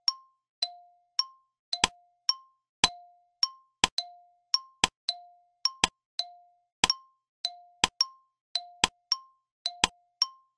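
Countdown-timer sound effect: a two-note electronic tick-tock, alternating a lower and a higher note about twice a second. About two seconds in, a sharp click joins it once a second.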